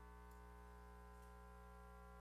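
Near silence: a faint, steady hum.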